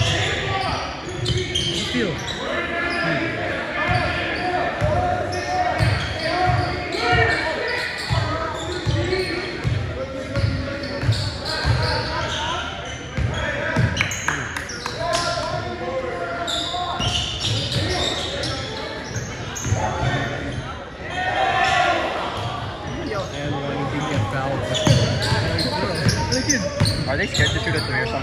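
Basketball dribbled on a hardwood gym floor during a game, repeated bounces echoing in a large gym over the talk of the players and the watching crowd.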